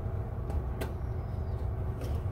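Room tone of a meeting room: a steady low hum, with two faint clicks about half a second and just under a second in.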